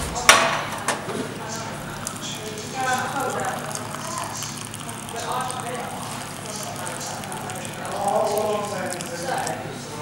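Hot water running from an electric tea urn's tap into a china teacup, under the chatter of voices in the room. A sharp knock sounds just after the start.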